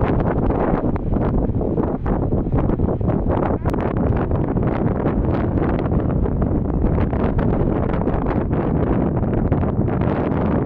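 Wind buffeting the microphone: a steady, loud rush that is heaviest in the low range.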